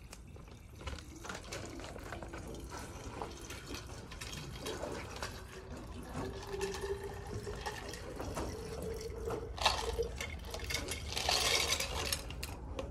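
Liquid being poured from a clear plastic cup, with small clicks and crinkles from the cup being handled and a steady pouring tone through the middle. There is a sharp knock about ten seconds in and a louder noisy rush near the end as the cup is tipped upside down.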